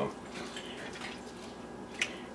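Mushroom duxelles reducing in cream in a frying pan, quietly bubbling and simmering while a spatula stirs through it.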